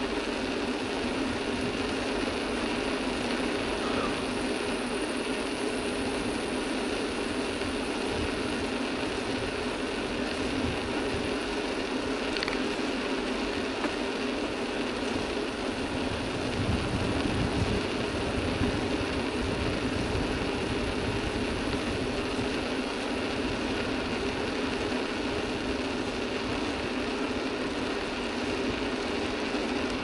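Steady riding noise of a mountain bike on asphalt, picked up by a camera mounted on the bike: tyres and drivetrain running with a mechanical rattle, with a little more low rumble about halfway through.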